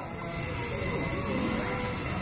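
Room background of a busy classroom: a steady hiss with faint, indistinct voices in the distance.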